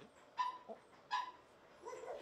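Small Pomeranian dog giving two short, high-pitched cries, under a second apart, while being handled during a post-surgery check.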